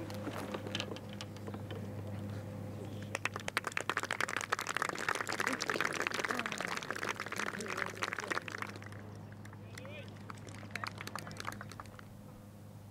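Golf gallery applauding an approach shot that has landed on the green, with a few voices in the crowd. The clapping starts about three seconds in, swells, and dies away by about nine seconds.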